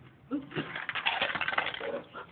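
A rapid clicking rattle that lasts a little over a second, from a small handheld battery-powered gadget being fumbled after it slipped.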